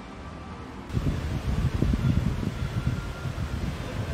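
Wind buffeting the microphone: an uneven, gusting low rumble that comes in about a second in, after a quieter stretch of steady outdoor hiss.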